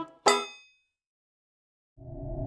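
The closing notes of a plucked-string cartoon theme tune: a final chord struck about a quarter second in rings out and fades within half a second, followed by dead silence.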